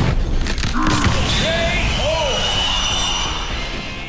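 A punch impact sound effect lands right at the start, followed by a few short voice-like cries, over steady background music.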